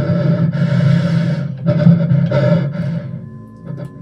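A caller's heavy breathing on a phone line: several long, rasping breaths over a low, ominous music drone, fading out about three seconds in.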